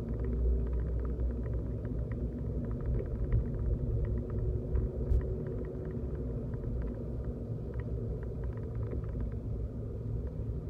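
Steady low rumble of a car driving on city streets, heard from inside the cabin, with many faint ticks and rattles scattered through it and a faint steady hum that fades about six seconds in.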